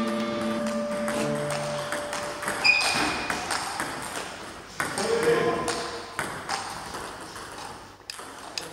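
Table tennis balls clicking off bats and tables, several rallies going at once in irregular quick ticks. Held musical notes run under the clicks for the first couple of seconds.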